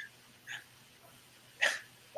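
Two short breathy sounds from a person, a faint one about half a second in and a louder, sharper one about a second and a half in.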